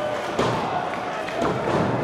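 A referee's hand slapping the wrestling ring mat twice, about a second apart, counting a pin that ends as a near fall, over crowd noise.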